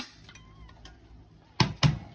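Two sharp metal clunks about a quarter second apart near the end, the tea kettle being set back down on the stovetop, after a stretch of near quiet.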